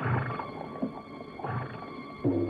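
Horses vocalizing: short low calls, three in quick succession.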